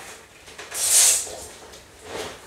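A short, soft hiss about a second in, made by a person as she straightens up from bending down beside a desk.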